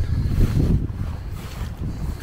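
Wind buffeting the camera's microphone: an irregular low rumble that eases off a little in the second half.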